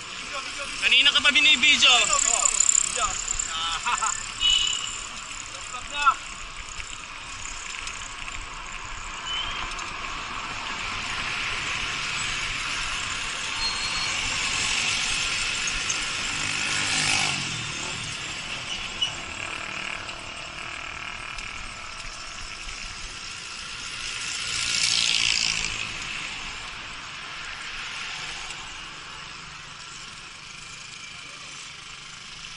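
Steady road and traffic noise heard from a moving bicycle on a highway, with motor vehicles going by; the noise swells as a vehicle passes about halfway through, and again with another a few seconds before the end.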